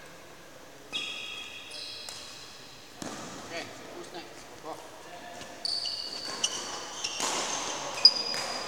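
Court shoes squeaking on an indoor sports-hall floor, several high, steady squeaks about a second in and again in the second half, with a few knocks of footfalls. A sharp knock comes at the end.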